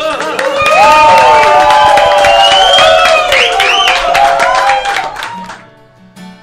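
The tail of a sung song: long sliding vocal notes and whoops over clapping, fading out near the end.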